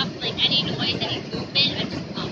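People talking nearby in short, high, wavering bursts of voice, over a steady low background rush.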